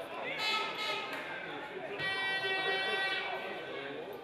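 A man's commentary voice talking over the match play. About halfway through there is one long steady held tone lasting just over a second.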